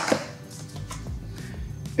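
Quiet background music, with a few faint knocks of parts being handled on a wooden workbench.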